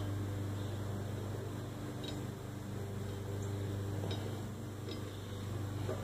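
A steady low mechanical hum with a few faint light ticks.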